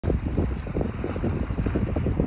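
Hot spring water churning and bubbling up from a vent in the pool, a rough irregular burbling, with wind buffeting the microphone.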